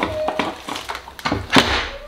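Immersion blender and its cord being handled on a kitchen counter and drawer: a few short knocks and clicks, the loudest about one and a half seconds in, followed by a brief rustle. The blender's motor is not running.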